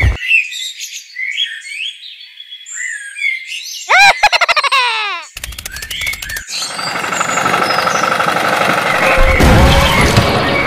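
Birds chirping for about four seconds, then a quick run of falling whistled chirps and a brief rapid rattle of clicks. After that a steady humming drone starts and gets louder near the end.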